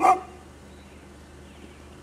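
A dog barks once, a single short loud bark right at the start, followed only by a faint steady low hum.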